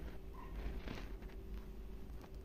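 Tikkis shallow-frying in oil in a pan, a faint sizzle, with a few soft scrapes of a metal spatula against the pan as they are moved.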